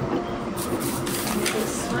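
Voices talking over one another in a busy restaurant, with a steady low hum underneath.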